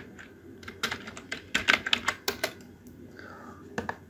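Typing on a computer keyboard: a quick run of keystrokes through the first two and a half seconds, then a couple more near the end as the command is entered.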